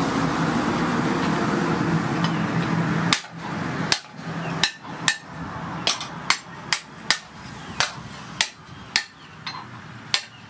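A steady mechanical hum for about three seconds that cuts off suddenly, then a hand hammer striking hot disc-plough steel on an anvil: about a dozen sharp blows at roughly two a second.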